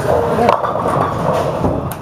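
Bowling alley din: background chatter over the rumble of balls rolling on the lanes, with a couple of sharp knocks, one about half a second in and one near the end.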